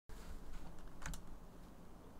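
Faint computer keyboard clicks, a few close together about a second in, over low room noise and hum.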